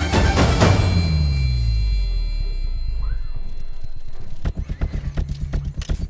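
Film soundtrack of armour parts assembling: a heavy hit right at the start, a low falling tone and rumble, then from about four and a half seconds in a fast run of sharp mechanical clicks, about six a second, over the score.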